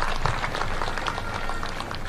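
Crowd in a stadium applauding, a dense patter of many hands clapping.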